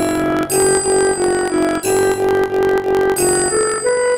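A notation app plays back a raag Yaman melody in a synthesized, bell-like tone: a single line of steady notes, about three a second.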